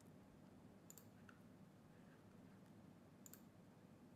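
Near silence with faint room tone, broken by two faint computer mouse clicks, one about a second in and one a little past three seconds.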